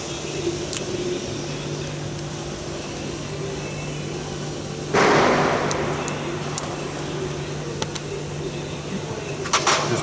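Handling noise from the camera pressed against a fleece jacket: a sudden loud scuffing rustle about five seconds in that fades over a second, and a few light clicks, some close together near the end, over a steady low hum.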